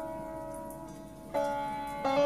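Sitar playing slow meditation music: a held note rings and fades, then a new note is plucked about a second and a half in and rings on.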